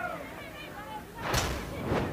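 A broadcast replay-transition whoosh, swelling in about two-thirds of the way through and building for about half a second, over faint field ambience.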